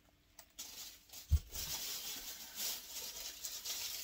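A single low thump about a second in, then rustling and crinkling as shrink-wrapped items are handled.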